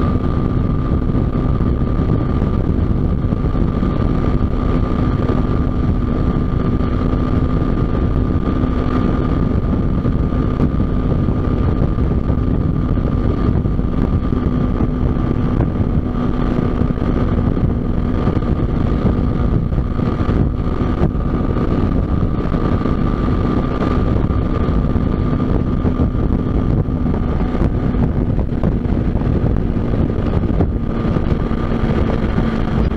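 A vehicle cruising at steady highway speed: an engine drone that holds one pitch throughout, under heavy wind rumble on the microphone.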